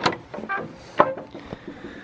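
Galvanized slide-bolt latches on a wooden door being drawn back by hand: several sharp metal clicks and knocks about half a second apart, the loudest about a second in, as the door is unlatched and opened.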